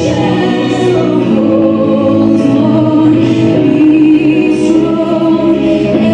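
Choral music: a choir singing over long held chords, loud and steady.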